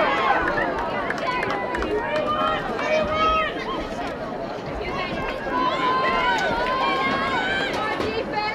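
Field hockey players and spectators calling and shouting over one another, many voices at once with no words clear.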